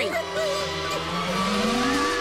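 Cartoon soundtrack: sustained steady tones with a whine that rises slowly in pitch through the second half, over a hiss.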